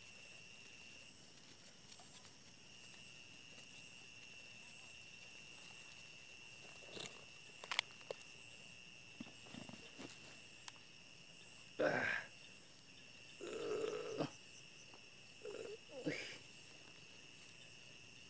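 Crickets and other night insects chirring steadily, a continuous high trill with a quicker pulsing chirp above it. A few short vocal sounds break in around the middle and later.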